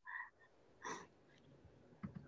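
Near silence, broken by two faint, brief voice sounds about a second apart.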